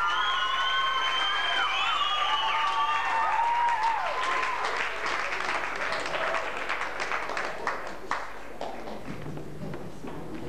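Audience applauding, with high calls and shrieks over the clapping in the first few seconds. The clapping thins out and dies away near the end.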